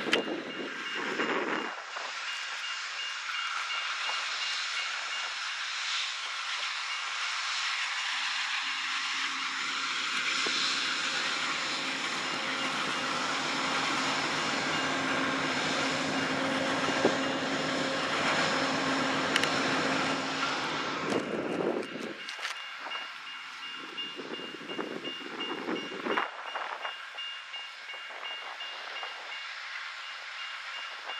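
Amtrak passenger train pulling into the station, a steady rush of rolling and running noise that dies away about two-thirds of the way through as the train comes to a stop. Throughout, a railroad grade-crossing bell rings steadily in the background.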